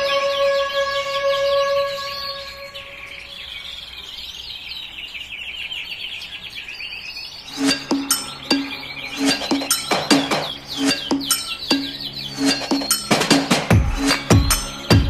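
Domestic canary singing a fast, rolling trill for about five seconds. Held music notes fade out under it at first, and background music with a steady beat takes over about halfway through.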